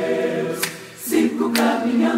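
Mixed choir singing a cappella in Portuguese. A held chord on 'Deus' fades out, then after a short breath about a second in the choir softly begins the next phrase, 'Sigo caminhando'. Sharp percussive clicks about once a second keep the beat.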